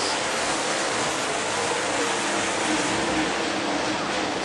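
A pack of UMP Modified dirt-track race cars running at speed, their engines blending into one steady, even noise.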